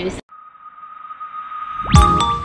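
A steady, high electronic tone that swells in loudness, ending in a fast rising whoosh: an edited-in transition sound effect.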